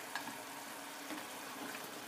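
Cubed chicken breast simmering and sizzling in its marinade juices in a frying pan, a steady hiss, with one faint click just after the start.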